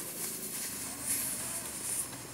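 A person drawing a long, steady inhale through a curled tongue, the yogic cooling breath: a soft, airy hiss of breath.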